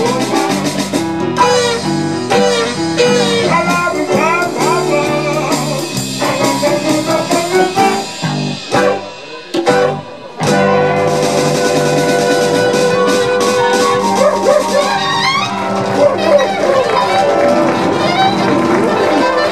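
Live jazz-boogie band playing an instrumental passage: saxophone, electric keyboard, electric guitar, bass, drums and congas. The band drops out briefly about nine seconds in, then comes back in with long held notes.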